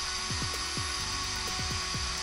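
Small cooling fan on a powered-up Hobbywing XR10 Pro brushless ESC, whirring steadily at a high pitch. A few faint, short downward-sliding chirps sound over it.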